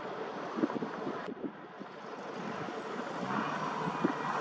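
Wind buffeting the microphone: a steady rushing with irregular low thumps and rumbles.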